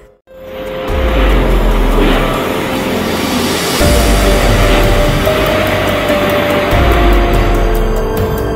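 Strong wind and heavy rain of a windstorm blowing in a steady rushing noise, starting after a moment's silence, under background music with low bass notes; sustained music tones join about halfway through.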